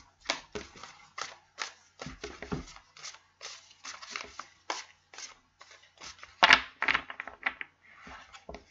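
A deck of tarot cards being shuffled by hand: a quick, irregular run of short soft slaps, about three a second, as the cards drop into one another, with one louder slap about six and a half seconds in.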